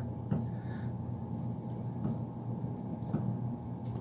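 Faint, scattered taps and clicks of a knife and fingers working a habanero pepper on a wooden cutting board, over a steady low hum.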